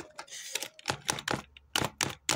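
Computer keyboard keys being typed, a handful of irregular keystrokes as a password is entered, most of them in the second half.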